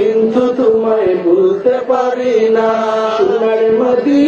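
A man singing a Bengali naat in praise of Madina, drawing out long held notes with slow melodic turns and no clear words, over a steady lower held note, amplified through a microphone.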